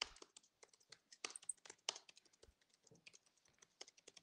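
Faint, irregular computer keyboard typing: a scatter of soft key clicks, a few slightly louder ones around the middle.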